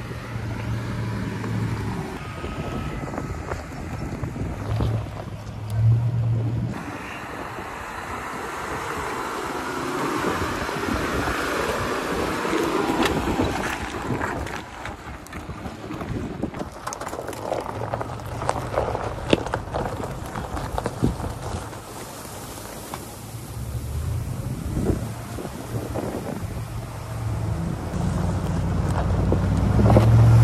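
4x4 trucks crawling over a rocky trail: a low, steady engine drone, with scattered clicks and knocks of loose rock under the tyres and wind rushing over the microphone.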